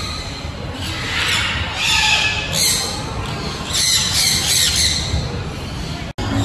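A flock of sun conures squawking, shrill harsh screeches coming in several bursts, loudest about two and four to five seconds in.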